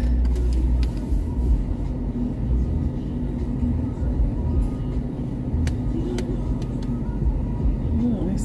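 Car engine idling, a low steady rumble heard from inside the cabin, with a few faint clicks.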